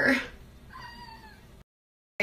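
A single faint, high-pitched call with an arching pitch, less than a second long, about a second in; the sound then cuts off abruptly.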